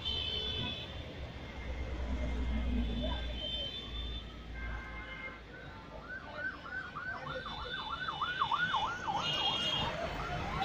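An electronic siren warbling fast, rising and falling about four times a second, starting about six seconds in.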